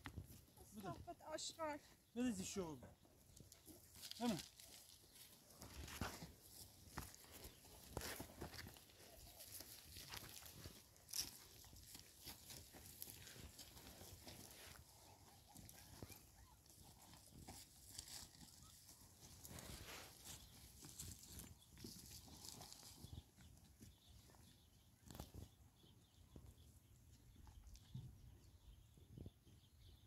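Footsteps of several people walking down a dry, stony slope, with scattered crunches and clicks of stones underfoot. A few brief calls, voices or goat bleats, are heard in the first four seconds.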